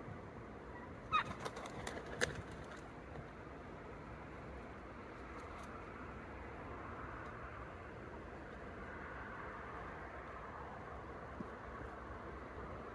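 Wild turkeys giving a few short, sharp calls about a second in, one with a quick falling pitch, over a faint steady outdoor background.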